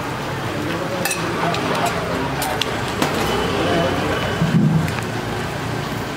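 Chopped boiled eggs frying in butter on a flat griddle, sizzling steadily, with a few sharp clicks along the way.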